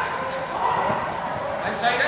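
Players' voices calling out in a large indoor football hall, over quick running footsteps on the artificial pitch.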